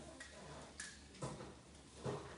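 A few light, separate clicks, about three in two seconds.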